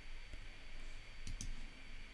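Faint computer mouse clicks, a couple of short, sharp ones a little after halfway, over a low steady hum.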